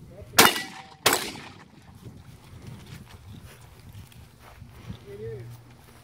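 Two shotgun shots about 0.7 seconds apart, each followed by a short echo.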